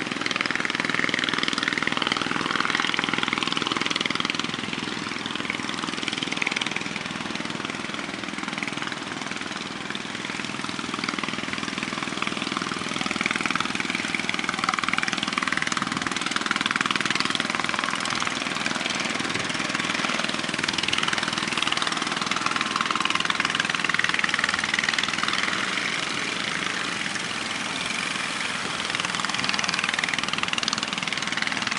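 Motor fishing boat's engine running steadily under the even noise of breaking surf, which swells and eases every few seconds.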